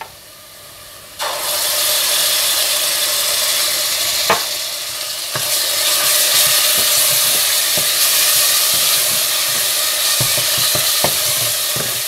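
Ginger-garlic paste and lightly browned chopped onions sizzling loudly in hot oil in a stainless steel pot. The sizzle starts suddenly about a second in, as the paste hits the oil, and a wooden spatula stirs through it with a few knocks against the pan.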